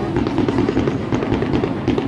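Aerial fireworks bursting overhead: a dense, continuous run of sharp crackles and bangs.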